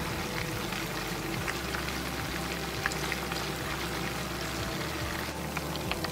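Ground beef meatballs frying in hot oil in a pan: a steady sizzle with scattered small pops and crackles.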